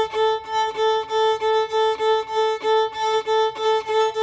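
Violin bowing the open A string in short, even down-bow and up-bow strokes, about three a second, all on one steady note. The bow changes are made by flexing the fingers of the bow hand without moving the wrist, the technique called washing the frog.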